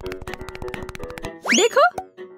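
Background music with a cartoon sound effect: a fast run of clicks over a steady tone, then, near the end, a quick loud glide that sweeps up and falls back like a 'boing'.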